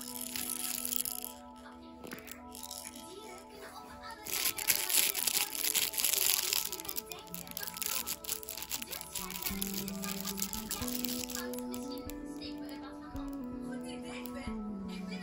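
Background music with a simple stepping melody, over bursts of rattling and crinkling from a baby's plastic rattle toy and soft cloth book being handled, loudest about four to seven seconds in.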